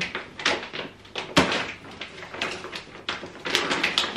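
The wrapping of a long roll of fabric rustling and crinkling as it is lifted and handled, in short irregular crackles, with a sharp knock about a second and a half in.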